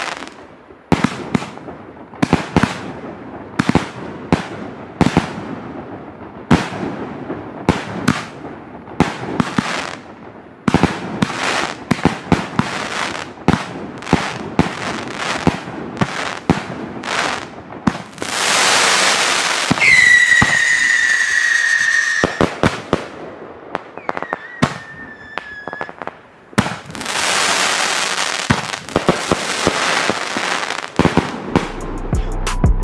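WECO Kolosseum XXL 70-shot firework battery firing: a rapid run of shots and aerial bursts, one after another. About two-thirds of the way through comes a loud hiss carrying a whistle that falls slightly in pitch, then a fainter whistle, then another long hiss before the shots resume.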